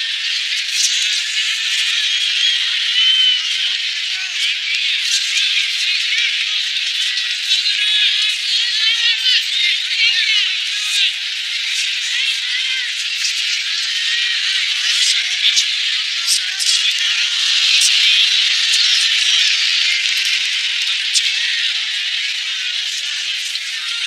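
Fight-broadcast audio of arena crowd noise and voices, sounding thin and tinny with all the low end missing, with sharp clicks scattered throughout.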